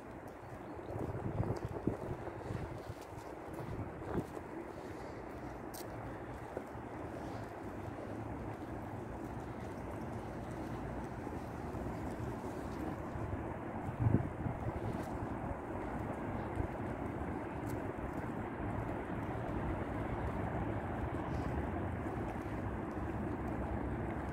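Steady hum of distant road traffic from a busy city avenue, with a few faint knocks, the most distinct about fourteen seconds in.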